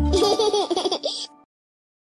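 Young children's voices laughing together as the song's last note stops, the laughter breaking off into silence about a second and a half in.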